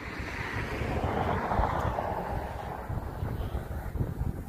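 Wind blowing across the microphone, rumbling low, with a gust that swells about a second in and eases off again.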